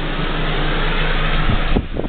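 RV furnace blower running with a steady rush of air and a low hum, the rush falling away near the end with a few knocks as it shuts off.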